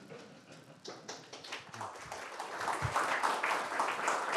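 Audience applauding, faint at first and growing steadily louder from about a second in.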